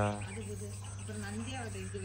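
Garden background of insects chirping over a steady low hum, with faint voices in the distance; a spoken word trails off just as it begins.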